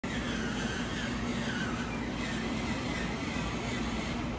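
Steady workshop background noise: a constant low hum under an even hiss.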